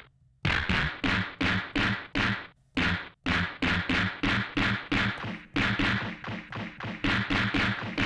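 A stock drum sample on an Akai MPC One+ pad, retriggered evenly about two and a half times a second. Each hit runs through a ring modulator and drive effects, giving a dirtied, distorted thump with a short ringing tail while the effect setting is adjusted.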